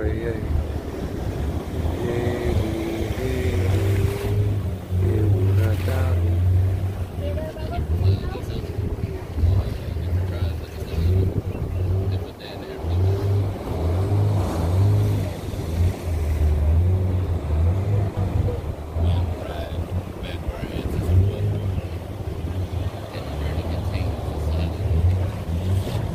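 Wooden fishing canoe under way on open water: a low, fluctuating rumble from the boat and wind on the microphone, with indistinct voices throughout.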